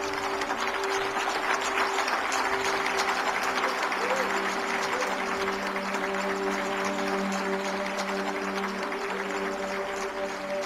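Audience applauding, with many hands clapping steadily, over a soft music bed of long held notes.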